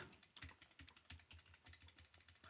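Faint computer keyboard keystrokes: a handful of light, irregular clicks.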